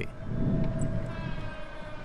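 City street traffic: a low rumble with a steady whining tone held through, sinking slightly in pitch.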